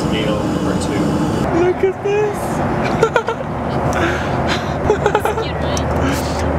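Steady low rumble of jet airliner cabin noise in flight, with short bits of voices over it a couple of times.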